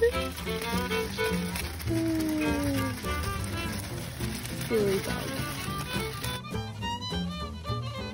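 Background fiddle music, a bowed violin melody over accompaniment. A steady hiss under it cuts off about three-quarters of the way through.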